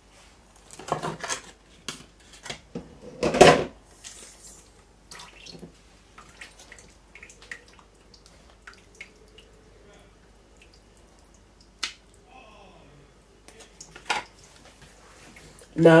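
Water poured slowly from a plastic bottle onto damp potting soil in a pot, a faint pattering and trickling. Two louder knocks of handling come in the first few seconds, and sharp clicks come near the end.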